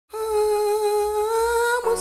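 A voice holding one long hummed note that rises slightly in pitch, opening the song. Near the end it gives way to the band's music.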